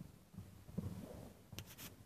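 Faint, muffled hoofbeats of a young Hanoverian mare cantering loose on the sand footing of an indoor arena, with soft scuffing and a few short clicks near the end.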